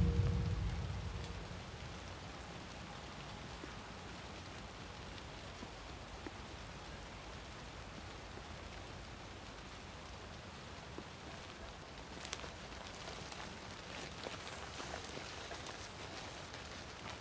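Faint, steady outdoor hiss, like light rain or dripping in fog, after a music ending fades out in the first second or two. A few small clicks and rustles come in over the last few seconds.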